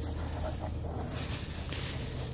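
Soft rustling and crinkling of a thin plastic bag being handled around a block magnet, over a steady background hiss.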